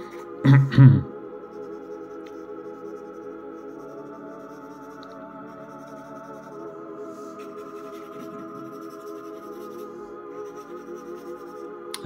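Ambient background music of sustained, steady tones, with faint pencil strokes scratching on drawing paper. A short vocal sound is heard about half a second in.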